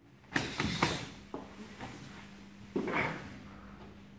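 Bodies grappling on a wooden floor: a quick run of sharp knocks and thumps about a third of a second in, then scuffing and rustling of martial-arts uniforms, with another burst of scuffing about three seconds in. A faint steady hum runs underneath.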